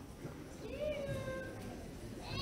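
A young child's voice making a drawn-out, high call of about a second, rising and then holding, in a room with low audience murmur.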